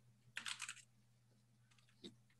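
Faint computer keyboard typing: a quick run of keystrokes about half a second in, then a few fainter taps near the end.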